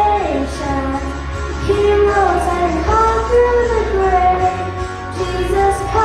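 A young girl singing a worship song into a handheld microphone, with held notes that glide between pitches, over a steady instrumental accompaniment.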